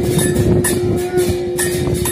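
Aarti ritual music: one long steady horn-like note held throughout, over bells or cymbals struck in a quick even rhythm, about three strikes a second.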